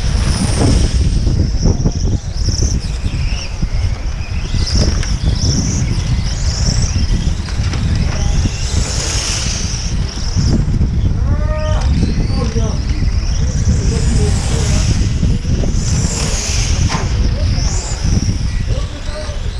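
1/8-scale nitro on-road RC cars racing, their small glow engines whining high and rising and falling in pitch as they accelerate and brake around the track, over a steady low rumble.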